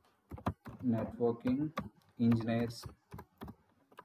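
Keystrokes on a computer keyboard, a run of separate clicks as a short word is typed, with a man speaking briefly twice between them.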